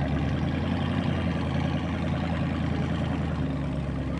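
Motorboat engine running steadily, a low even drone that holds without breaks.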